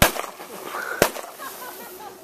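Fireworks going off: two sharp bangs about a second apart.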